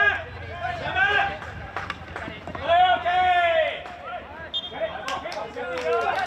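Field hockey players shouting calls to one another across the pitch, with one long, loud call about three seconds in, and a few sharp clicks of sticks striking the ball.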